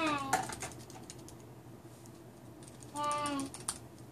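Computer keyboard keys clicking as a login password is typed, in two short runs, with a brief pitched call that falls slightly in pitch about three seconds in.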